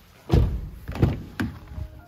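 Kia K5 car doors being handled: three heavy thuds within about a second and a half, the first two the loudest, as a door is shut and the rear door is opened.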